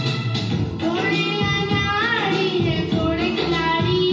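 A boy singing a patriotic song over recorded backing music; his voice comes in about a second in, after a short instrumental stretch.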